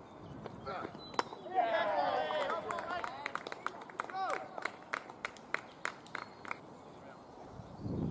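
A sharp crack of the cricket ball, then cricket fielders shouting and cheering together, followed by a scatter of hand claps, celebrating a wicket.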